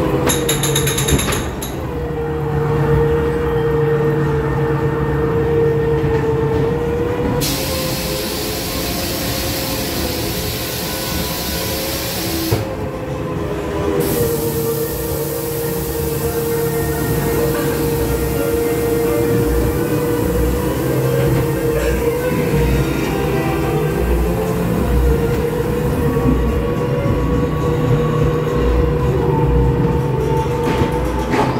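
Haunted-house dark ride: a ride car rumbling along its track with a steady droning tone throughout. A loud hiss sounds for about five seconds, starting about seven seconds in.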